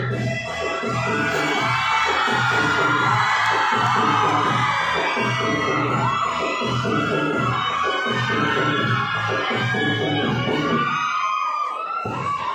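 Dance music with a steady beat, and a crowd cheering and whooping over it. The beat stops about a second before the end, leaving the crowd's voices.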